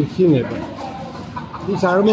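A chicken clucking in two short bursts, one just after the start and one near the end.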